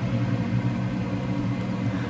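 A steady low mechanical hum with a faint hiss, unchanging throughout.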